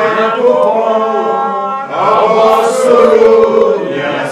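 Slow worship chorus sung with long held notes, in two phrases with a short break about two seconds in.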